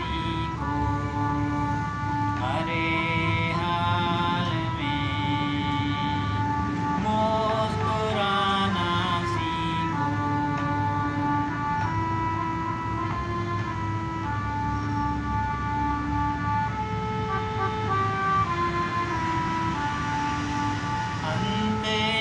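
Harmonium playing a slow instrumental melody of held reed notes, one note gliding into the next every second or so, with no singing.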